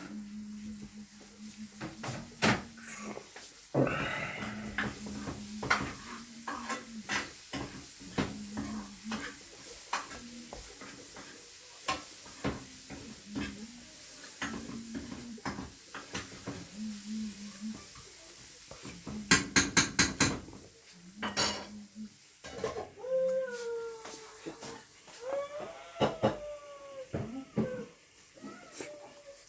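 Fingers scraping and tapping on a stainless steel plate as rice is mixed and eaten by hand, a string of sharp clicks, with a quick run of about six louder clicks around the middle. Near the end a high wavering call rises and falls several times.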